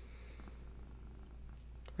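Quiet pause: faint room tone with a steady low hum.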